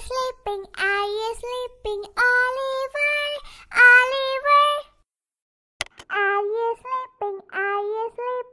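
A girl's recorded singing voice played from a singing plush doll, set off by the music-note button on its shoe. It sings short phrases, breaks off for a moment about five seconds in, then goes on singing.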